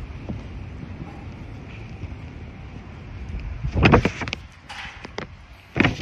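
Wind rumbling on a handheld phone's microphone, with two loud gusts, one about four seconds in and one near the end.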